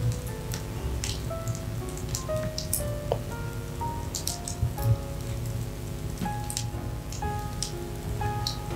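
Soft background music of slow, held notes, with the irregular pops and crackles of a wood fire burning in a fireplace.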